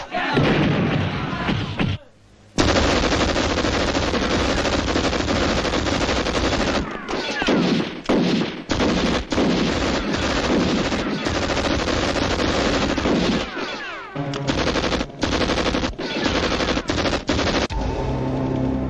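Dense, rapid gunfire from several guns in a shootout, continuing in long runs with a short silence about two seconds in and a few brief breaks later.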